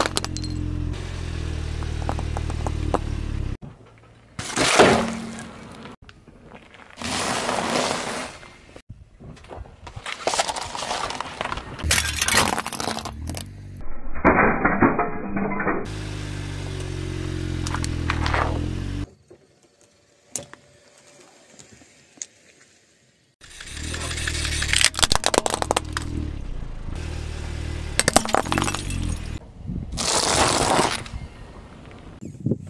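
A car tyre crushing a series of objects in short clips, heard as cracking, breaking and crunching, with background music that cuts in and out between clips. There is a quieter stretch about two-thirds of the way through.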